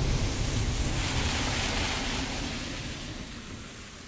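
Road and tyre noise from a moving Proton X70 SUV: a steady rushing hiss over a low rumble that fades away over the last couple of seconds.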